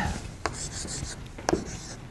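Chalk scratching on a chalkboard as it is written on in short strokes, with two sharp taps of the chalk against the board.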